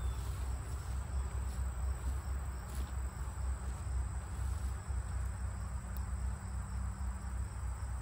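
A steady, high-pitched drone of insects over a low, uneven rumble.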